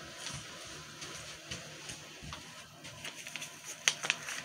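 Quiet room noise with a few soft clicks and rustles of handling.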